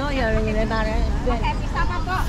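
A person's voice talking, over a steady low background rumble.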